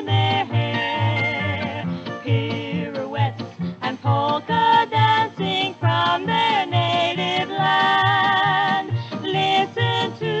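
1951 polka record with instrumental accompaniment playing: a steady bass beat about twice a second under a wavering melody line.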